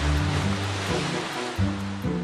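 Splash of people plunging into a swimming pool: a rush of churning water that dies down over the two seconds, under background music.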